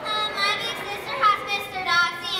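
Children's voices talking, high-pitched and not clear enough to make out words.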